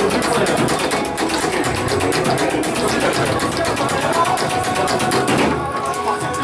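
Loud bar background music and room noise, with a foosball table in play: the ball and the rods clattering.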